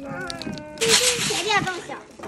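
Children's voices chattering over one another. About a second in, a loud hissy burst comes in, with a high child's voice over it.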